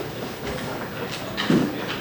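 Steady room noise in a small lecture room, with a brief faint voice sound about one and a half seconds in.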